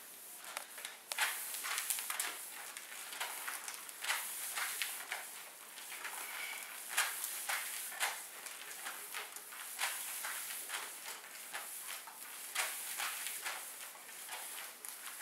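Slide booties striding back and forth on a plastic slide-board sheet, a skating-stride drill: a sliding hiss with a sharp scuff or thump at each stride, about once a second.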